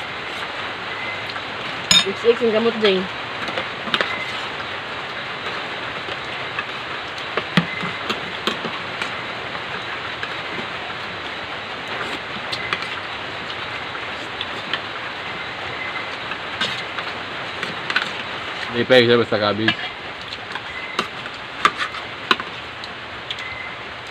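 Metal spoons and forks clinking and scraping against plates and bowls during a meal, in short scattered clicks over a steady background hiss.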